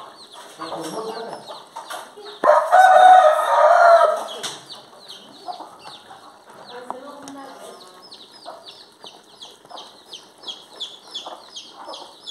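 A rooster crows once, loud and about two seconds long, starting about two and a half seconds in. Chicks peep in a rapid, continuous run of short falling chirps throughout, with occasional hen clucks.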